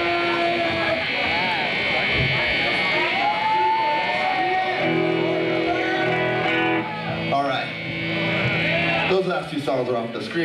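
Live rock band's electric guitars holding sustained, ringing notes through the club PA, with a high steady tone running under them. About a second before the end the music drops and a man starts talking into the microphone.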